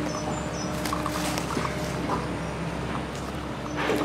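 Footsteps on leaf litter going down steps through woodland, with a few short high bird chirps near the start over a steady low hum.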